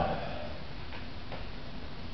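Plastic CD cases being handled and set down: a sharp click at the start, then two faint ticks around the middle, over a low steady room hum.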